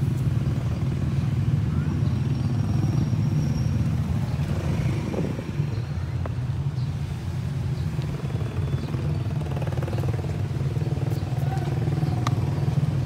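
A steady low rumble, with a few faint clicks and taps over it.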